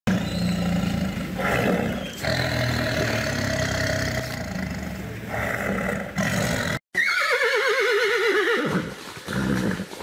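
Tiger growling and roaring for nearly seven seconds. After a short break, a horse whinnies once, the call falling in pitch with a quaver.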